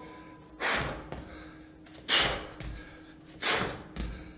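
A man's forceful exhales during push-to-base reps, three short breaths about a second and a half apart, one with each rep.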